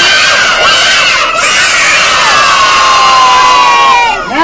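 A large group of young children shouting together in one long, held cheer, answering a call-and-response 'are you ready?'. Many voices sustain the shout as its pitch slowly sinks, and it breaks off near the end.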